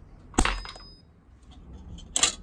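A single sharp snap about half a second in: the kWeld spot welder firing a pulse through its copper electrode tips into copper strip. The weld fails, fusing the copper to the tips rather than to the workpiece.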